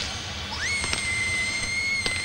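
A single long whistle blast: a high, steady note that sweeps up to pitch about half a second in and holds. It is the signal for the train's departure.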